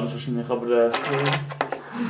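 A few sharp clicks of poker chips being handled and tapped on a wooden table, with a voice over them.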